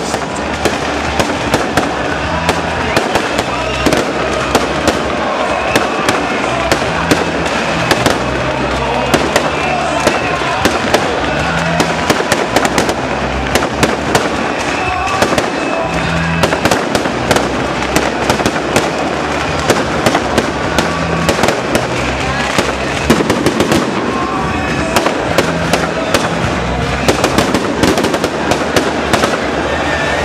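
Fireworks and firecrackers going off in a dense, continuous run of sharp bangs and crackles, several a second, over music and crowd voices.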